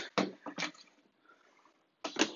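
Two brief rustling scrapes of thick rubber power cords being pulled and handled, within the first second, then quiet.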